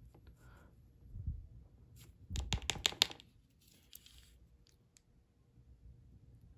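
Handling noise from fingers on a disassembled iPod nano's bare logic board and display: faint rubbing, then a quick cluster of small clicks and scrapes about two and a half seconds in.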